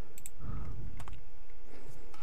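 A few separate sharp clicks from a computer keyboard and mouse being worked between lecture sentences, with a soft low thump about half a second in.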